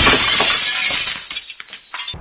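Sudden loud crash and shatter as the mounted action camera is knocked down, the noise fading away over about a second and a half.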